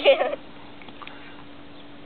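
A child's short vocal sound in the first moment, a brief voice-like call rather than words, then only quiet background with a faint steady hum.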